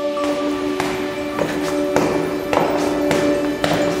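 Background music with a steady drone, over heeled boots stepping up stone stairs, a sharp heel click about every half second.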